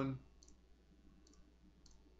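Faint computer mouse button clicks, about three of them, spaced roughly half a second to a second apart, each click filling another segment of the drawing with CorelDraw's Smart Fill tool.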